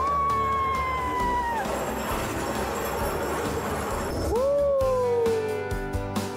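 Two long whoops from a voice over background music. The first is high, starts with a quick upward slide and is held about a second and a half. The second, about four seconds in, is lower and slides down over about a second and a half.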